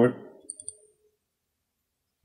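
Computer mouse button double-clicked: two quick, light clicks about a fifth of a second apart, just after the end of a spoken word.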